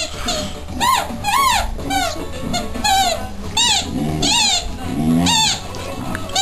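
Boxer dog whining: a string of short, high-pitched whines, each rising and falling in pitch, about every half second. Two lower, longer moaning calls come between them around the fourth and fifth seconds.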